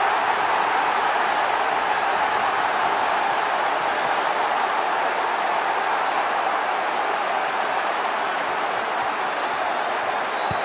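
Football stadium crowd cheering a home goal: a loud, steady wall of cheering that slowly eases off.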